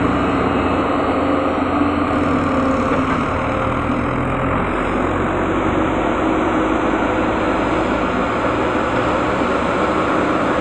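Diesel engine of a JCB tracked excavator running steadily under load as it digs earth and loads a tractor trailer. A tractor's engine runs alongside it.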